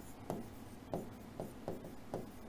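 Stylus writing on a tablet: the pen tip makes faint, irregular taps and scratches, about four in two seconds.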